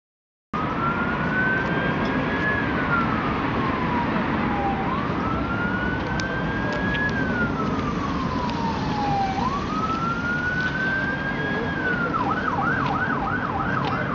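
A siren sounding a slow wail, rising and falling about every four and a half seconds, then switching to a fast yelp about two seconds before the end, over a steady background rush.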